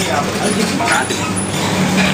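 Background voices talking over a steady low hum and general room noise, the hum in the manner of engine or traffic noise.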